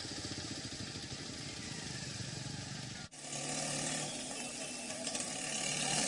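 Motor traffic on a rain-wet road: scooters and other vehicles running, with steady tyre hiss. About three seconds in the sound cuts to a louder, hissier street noise with engines still under it.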